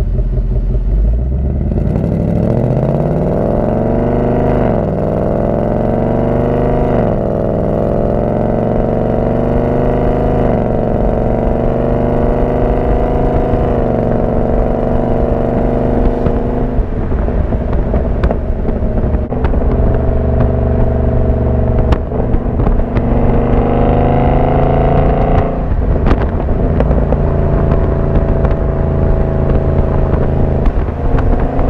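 Ford Mustang on its stock exhaust, heard from close behind the car, accelerating hard: the engine note climbs and drops sharply at three quick upshifts of the ten-speed 10R80 automatic in the first ten seconds, then holds steady while cruising, with one more climb and upshift a few seconds from the end.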